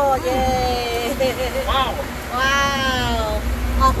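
A man's drawn-out wordless vocal sounds of relish, two long calls falling in pitch with a short one between, over a steady low rumble.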